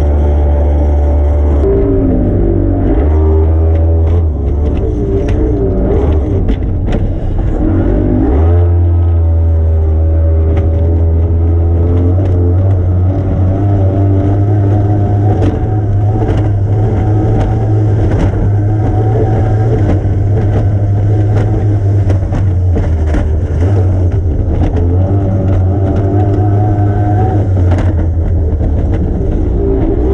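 Formula 2 racing powerboat's outboard engine running hard, heard from inside the closed cockpit over a deep, steady rumble. Its pitch drops and climbs back twice in the first eight seconds as the throttle is eased and reopened, and brief sharp knocks of the hull on the water cut through throughout.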